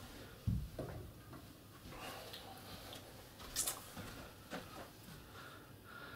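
Faint footsteps with small knocks and clicks as a cricket bat is taken down from a wall display rack and carried back. A soft low thump about half a second in is the loudest sound, with a sharper click a few seconds later.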